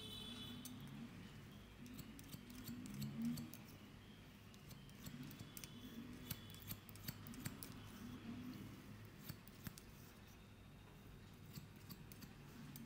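Barber's steel scissors snipping through beard hair close to the microphone: a run of quick, irregular snips that thins out near the end.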